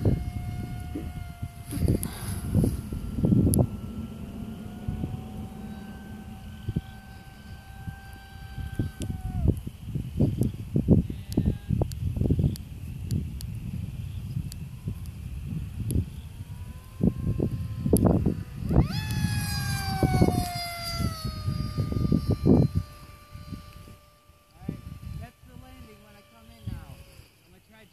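Distant electric motor and propeller whine of an RC aircraft on a 4S battery, holding steady for a few seconds at a time and then sliding up or down in pitch as the throttle changes, with one sharp falling whine past the middle. Gusts of wind buffet the microphone throughout.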